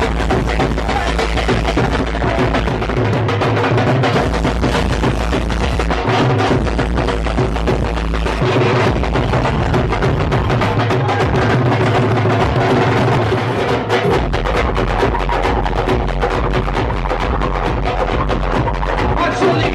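Several dhols beaten with sticks in fast, dense bhangra rhythms, played live over loud amplified dance music whose heavy bass cuts out briefly a few times.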